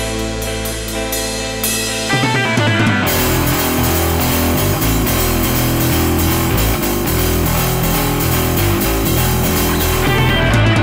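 Rock band playing an instrumental passage with drum kit and guitar; the band comes in louder and fuller about two seconds in.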